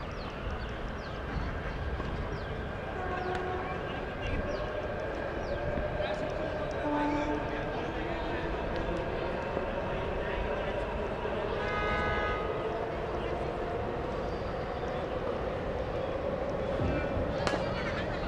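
Open-air background noise at a cricket ground: a steady hiss with faint distant voices and a wavering hum. A short pitched blare sounds about twelve seconds in.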